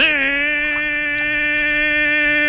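A man's cartoon voice holding one long, steady note, starting suddenly and not changing in pitch.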